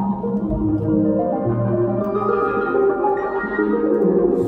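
Synthesizer keyboard music played by hand: held, layered chord notes over a low bass line that steps from note to note about once a second.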